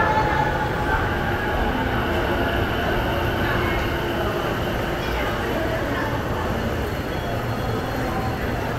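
JR commuter electric train pulling into the platform and slowing to a stop, a steady rumble of wheels and motors that gradually eases. Faint high squealing tones sound in the first second or two.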